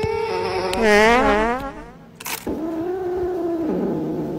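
Kittens meowing close into a handheld microphone: a wavering, falling meow about a second in, then one long drawn-out meow through the second half.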